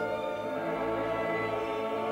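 Choir and orchestra performing slow classical sacred music, the voices holding long sustained notes.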